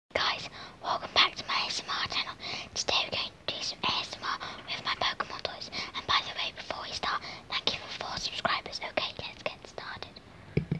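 A voice whispering close to the microphone in steady, word-like runs, with small sharp clicks between the words.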